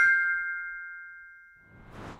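A bright electronic notification-bell chime, the ding of a subscribe-button animation, ringing with a few clear tones and fading away over nearly two seconds. A soft whoosh swells near the end.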